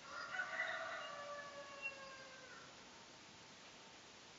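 A rooster crowing once, faintly: one long call that starts at full strength and slides slowly down in pitch as it fades out, about two and a half seconds in all.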